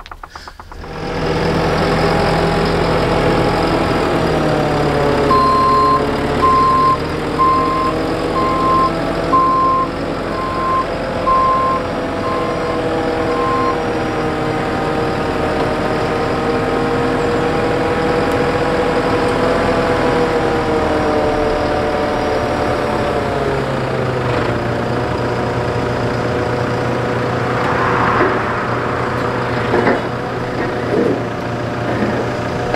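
JCB telehandler's diesel engine running under varying load, its pitch shifting a few times. A reversing alarm beeps about once a second for roughly nine beeps in the first half.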